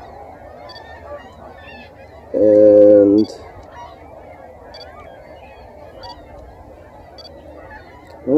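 Quiet outdoor ambience with faint, short high chirps roughly once a second, broken a little over two seconds in by one louder, steady, low held tone lasting under a second.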